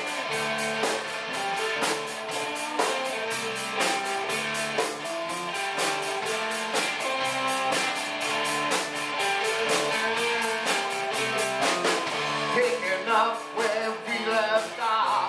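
Live rock band playing: electric guitars and bass chords over a steady drum beat.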